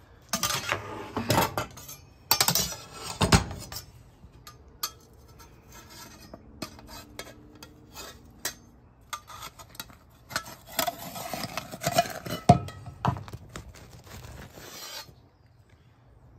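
Metal spatula scraping around the sides and under a deep dish pizza in a cast iron skillet, loosening baked-on cheese so the pizza comes out without sticking. The scraping is broken by clicks of metal on the iron pan, with sharper knocks about 3 seconds in and again near 12 seconds.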